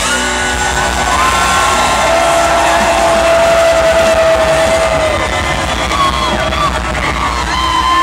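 Live rock band playing at a stadium concert, heard through a camcorder held among the audience, with people nearby whooping and yelling in long held calls over the music.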